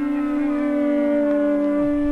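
Experimental electronic music: a loud, held drone-like tone with several overtones, siren- or horn-like in colour, with some of its upper tones sliding downward near the end.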